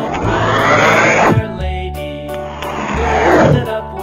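Two roar-like sound effects, each swelling up and falling away, the first about a second and a half long and the second shorter near the end, over children's background music.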